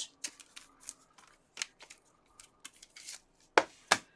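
Gloved hands handling trading cards and clear plastic card holders: a string of light, irregular clicks and rustles, then two sharp clicks near the end.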